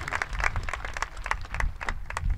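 Audience applauding, many hands clapping densely and irregularly.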